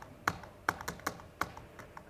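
Laptop keys pressed one after another, about half a dozen separate sharp clicks at an uneven pace, paging through presentation slides.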